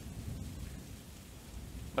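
Steady background hiss with a low rumble, with a brief dropout at the very start.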